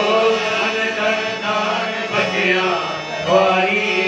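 Hindu devotional song (bhajan to the Mother Goddess) sung with instrumental accompaniment, a steady drone running under a voice that bends through long held notes.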